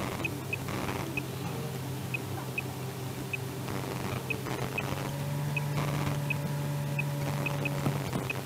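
A steady low hum inside a car stopped in traffic, growing a little stronger about two-thirds of the way through. Faint short high chirps come every half-second or so at uneven intervals.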